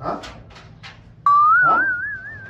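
A high whining tone breaks in suddenly about a second in, loud, gliding upward and then wavering evenly up and down.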